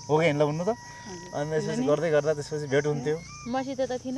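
People talking, with a steady high-pitched drone of insects running underneath.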